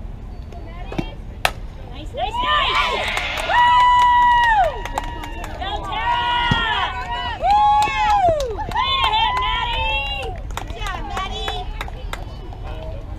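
A single sharp crack of a softball bat hitting the ball about a second and a half in, followed by spectators yelling and cheering, with several long drawn-out shouts over the next several seconds.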